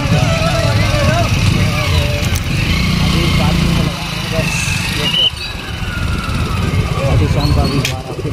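Motorcycle running at low speed with heavy wind noise on the microphone, and many people's voices of a crowd around it.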